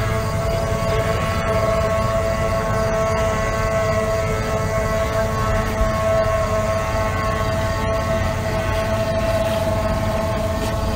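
Racing outboard engines running at steady high revs on the water: a continuous high-pitched whine over a low rumble.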